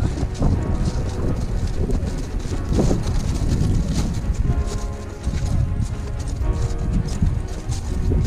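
Background music over rhythmic crunching footsteps of crampons biting into glacier ice.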